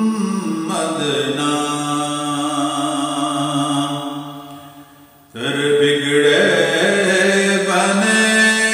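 A man singing an Urdu naat in a slow, chant-like style with long held, wavering notes. One note fades out about five seconds in and a new phrase starts abruptly.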